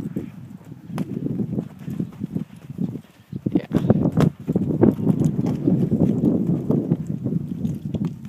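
Hoofbeats of a Tennessee Walking Horse walking on soft arena sand: a quick, irregular run of low thuds that grows busier about halfway through.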